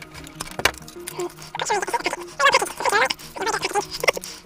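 Crinkling and rustling of a small plastic packet being pulled open and handled, busiest in the second half, over faint steady background music.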